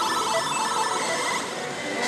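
Rapid, evenly repeating electronic beeps and jingle from a Daito Giken Hihouden pachislot machine as it awards extra games, over the din of a pachislot hall.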